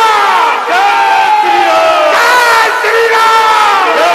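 Loud sampled crowd war cry used as a DJ remix effect: many voices shouting together in overlapping cries that slide down in pitch, a new one about every second.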